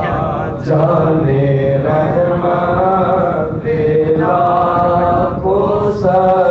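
A man chanting a naat, an Urdu devotional poem in praise of the Prophet, into a handheld microphone in long, drawn-out melodic phrases, with brief breaks for breath between them.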